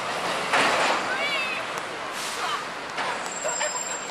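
City street traffic with a double-decker bus passing close. About half a second in, a loud burst of hissing air comes from it, fitting a bus air-brake release, and weaker hisses follow later.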